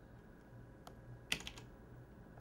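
A few sparse keystrokes on a keyboard, the loudest a little after a second in, over a faint low steady hum.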